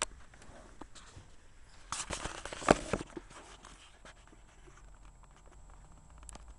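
Handling noise from a handheld camera being moved: scattered clicks, and a short cluster of rustling and knocks about two to three seconds in.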